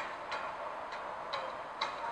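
A pause in speech: faint outdoor background noise with a few soft clicks, about one every half second.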